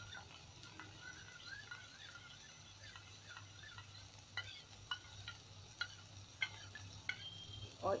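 Metal spoon stirring a cornflour-and-water slurry in a small steel bowl, faint, with a series of short, light clinks of spoon against bowl in the second half.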